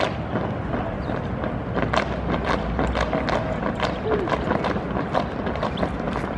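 Drill team cadets' boots stamping on asphalt and their drill rifles being slapped and handled: a string of sharp knocks at uneven intervals, with voices murmuring in the background.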